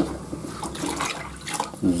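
Water pouring and splashing into a plastic tub as the clear filter bowl of a Grünbeck backwash water filter is unscrewed and comes off, with a few light clicks of the bowl.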